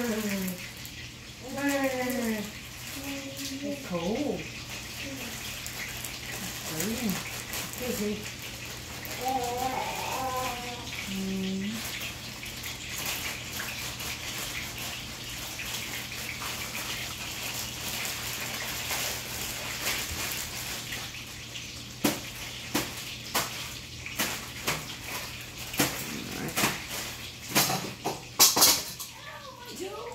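Water running steadily. A voice rises and falls in pitch through the first dozen seconds, and a run of sharp clicks and clatter comes over the last several seconds.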